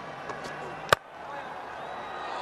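A cricket bat striking the ball: a single sharp crack about a second in, as the batsman hits a big shot.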